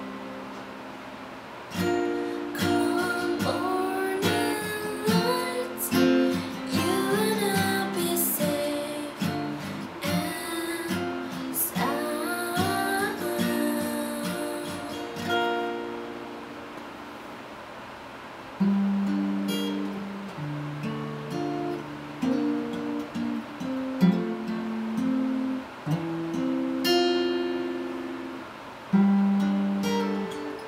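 Acoustic guitar picked in a steady pattern, with a voice singing the melody over it for the first half. From about halfway through, the guitar plays on alone.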